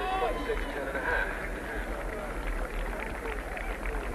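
Stadium crowd murmur with faint, distant voices. A voice is briefly audible in about the first second.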